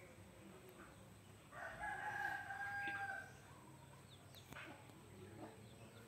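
A rooster crowing once, a single long call beginning about one and a half seconds in and lasting nearly two seconds. Around it are faint scrapes and ticks of a knife peeling a chayote on a plastic cutting board.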